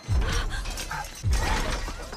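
Film sound effects of Doctor Octopus's mechanical tentacles whirring and clanking, with heavy low rumbling hits at the start and again about a second and a quarter in.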